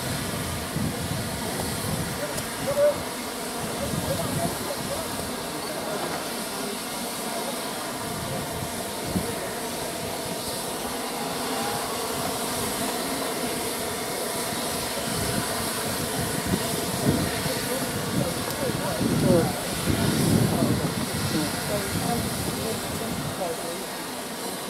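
Steady hiss of steam venting from GWR Castle-class steam locomotives standing in steam, with a crowd talking. The steam noise swells briefly about twenty seconds in.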